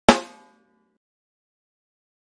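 A single loud percussive hit, a sync cue for lining up the singers' videos, with a short ringing tail that dies away within about half a second.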